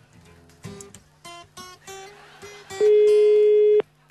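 Soft plucked guitar-like notes of a background music bed, then near the end a loud one-second steady telephone ring tone on the line that stops abruptly: the ringback of an outgoing call ringing unanswered at the other end.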